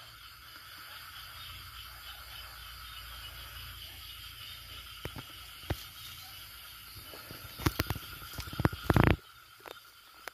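Footsteps and rustling through undergrowth, with scattered knocks, loudest in a cluster about three-quarters of the way in. Behind them runs a steady high drone of night insects and a low rumble of the camera being carried.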